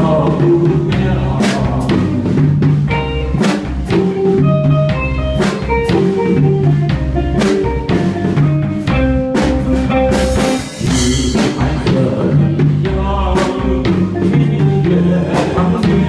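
Live instrumental break of a song: a steady drum beat under a melodic keyboard line, with a crash about ten seconds in.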